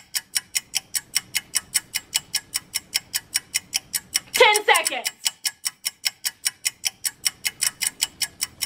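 Game-show countdown timer ticking quickly and evenly, about five ticks a second. About four and a half seconds in comes a short vocal cry from a woman.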